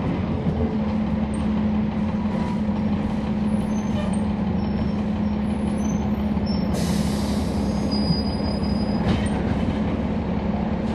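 Cummins ISL9 diesel engine of a 2011 NABI 40-SFW transit bus, heard from inside the cabin, running with one steady low tone as the bus moves. From about seven to nine seconds a high hiss with a thin squeal rises over it.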